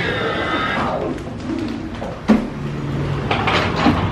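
A glass exit door with a push bar being pushed open and passed through. A high tone of several stacked pitches is heard for under a second at the start, and a sharp knock about two seconds in.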